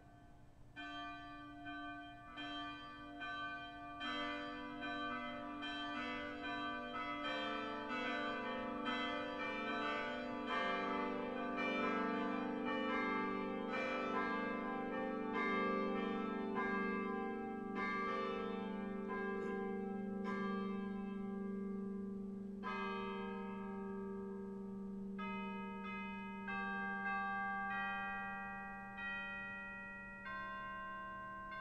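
Church bells ringing a continuous sequence of strikes, about two a second, each tone ringing on under the next. The ringing grows louder over the first few seconds, and about three-quarters of the way through it changes to a different pattern of tones.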